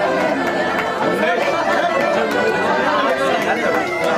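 Crowd chatter: many people talking at once in a hall, a steady, lively hubbub of overlapping voices.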